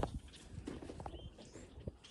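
Faint, irregular footsteps in snow, with a sharp click right at the start and a few soft knocks.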